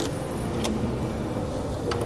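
Steady low rumble of background noise with two sharp clicks, one just over half a second in and one near the end.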